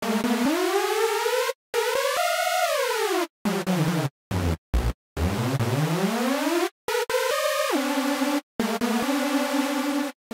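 u-he Hive software synthesizer playing a repeating pattern of short sawtooth notes, their pitch gliding up and down as the Tune modulation depth from a constant source is turned to detune oscillator 2.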